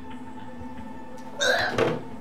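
Soft background music with steady held tones, then about one and a half seconds in a single short hiccup-like sound from a person's voice.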